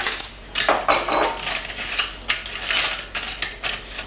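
Dry fried tortilla chips crackling and rustling as handfuls are lifted from a plastic colander and dropped into a glass baking dish, in several irregular crunchy clatters.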